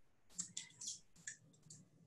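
Several faint, short clicks and light rustles over about a second and a half, from small things being handled on a tabletop.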